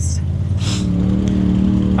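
Side-by-side UTV engine revving up about half a second in and then holding a steady higher rpm as the machine crawls up a rock ledge under load.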